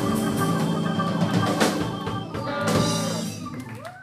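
Live rock band of electric guitars, bass, drum kit and keyboards playing the closing bars of a song: sustained chords with two sharp drum hits in the middle, the sound dying away near the end as the song finishes.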